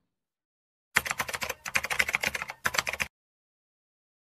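Computer keyboard typing sound effect: rapid key clicks in three quick runs with short breaks, starting about a second in and stopping abruptly about three seconds in.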